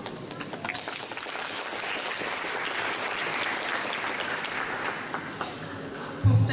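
Audience applauding, many hands clapping together, fullest around the middle and thinning near the end.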